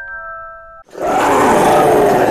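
A few chiming, glockenspiel-like notes stop abruptly, and just before a second in a loud, rough roar starts and holds to the end.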